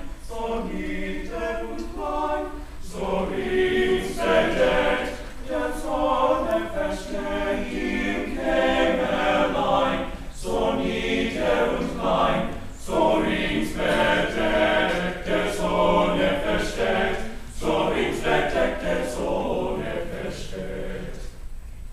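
Male choir of high-school voices singing a slow German part-song in several parts, phrase by phrase with short breaths between phrases.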